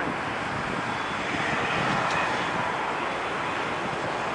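Boeing 767-300 jet airliner's engines running at low taxi power as it taxis, a steady, even engine noise with no change in pitch.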